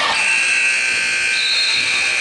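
Gym scoreboard horn sounding one long, steady electronic buzz, with a higher tone joining about halfway through, as the clock runs out to signal the end of the third quarter.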